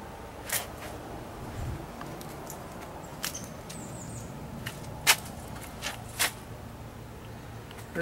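Footsteps scuffing on a concrete walkway as a person walks, a few sharp steps standing out, the loudest about five seconds in, over a steady low hum. A short run of faint high chirps comes about four seconds in.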